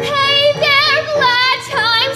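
A young female singer performing a musical theatre song with strong vibrato on held notes, over a musical accompaniment.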